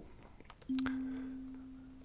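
Sonic Pi's kalimba synth playing a single middle C (MIDI note 60), which starts about two-thirds of a second in and slowly dies away. It is very low in volume at the synth's default amplitude of one.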